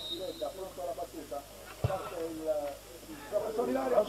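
Faint shouts of footballers on the pitch, with a single sharp thud of a football being kicked about two seconds in, as a free kick is struck.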